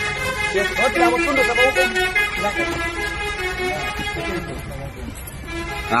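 Men's raised voices during a scuffle as a man is forced into a car, over a low steady rumble.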